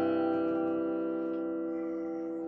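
Acoustic guitar's closing strummed chord ringing out and slowly fading away at the end of a song.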